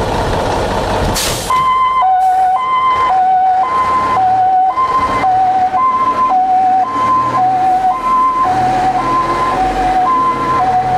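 Ural fire truck's two-tone siren, alternating a higher and a lower note about once a second, starting about a second and a half in, over the truck's engine running. Before the siren starts there is only engine noise, with a short hiss about a second in.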